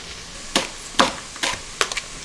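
Chef's knife slicing through a leek onto a wooden cutting board: sharp chops roughly every half second.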